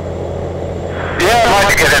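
Steady low engine and road drone of a vehicle travelling at highway speed. About a second in, a man's voice comes in over the top of it.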